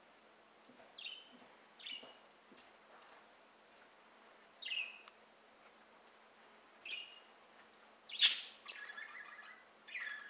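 Small songbirds chirping at backyard feeders: four short single chirps a second or more apart, each dropping slightly in pitch, then a loud sharp sound and a harsher, chattering call about eight seconds in.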